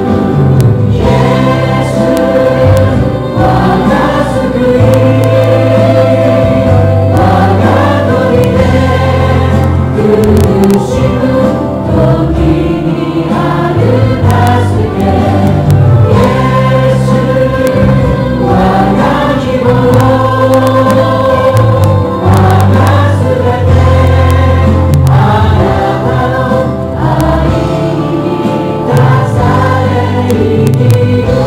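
A group of voices singing a Christian worship song in Japanese, with musical accompaniment. Held bass notes under the singing change every couple of seconds.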